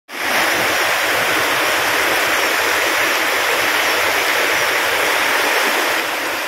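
Water rushing steadily over the crest of an overflowing anicut (small concrete check dam), a constant even rush with no breaks.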